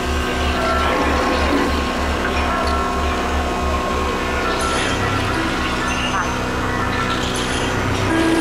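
Live electroacoustic ensemble improvisation: layered sustained synthesizer and electronic tones over a low electronic pulse repeating between two and three times a second.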